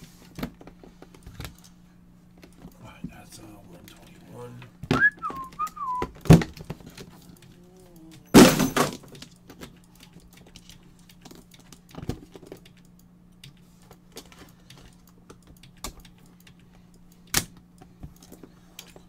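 Aluminium briefcase-style card case being handled and opened: small clicks and knocks from its metal latches and lid, with a few louder clacks, the longest a little past the middle. A steady low hum sits underneath, and a brief whistle glides about five seconds in.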